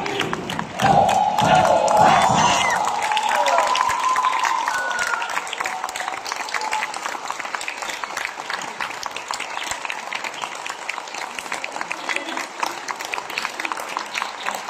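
Audience applauding and cheering as a folk dance ends, with a long held whoop from voices over the first few seconds and heavy thuds of the dancers' stamping feet at the very start. The clapping then carries on steadily.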